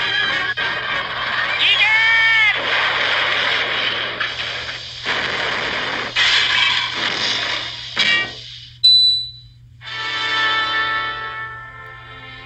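Cartoon soundtrack: music mixed with loud, noisy sound effects and a short wailing tone about two seconds in. The noise cuts off about nine seconds in, and a softer, steady music passage follows.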